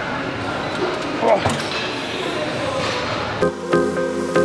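Busy gym background noise with a sharp knock about a second in, then electronic dance music with a steady beat comes in near the end.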